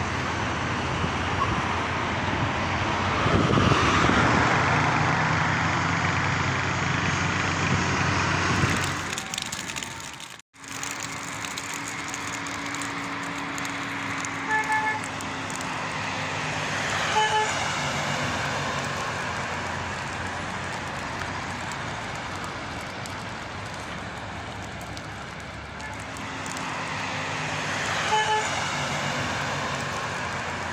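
Road traffic noise with a vehicle engine running close by, then, after a cut, street traffic with a car horn giving a few short toots.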